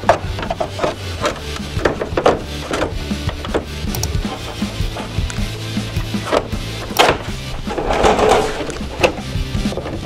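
Background music with a steady bass line over a series of light knocks and taps from a fiberglass wing flap being handled and fitted against the wing, with a sharper knock about seven seconds in and a short rub just after.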